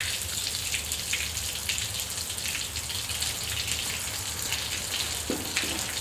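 Water spraying and splattering onto concrete from a motor-driven rig mounted in a wooden frame, as a steady hiss over a low hum.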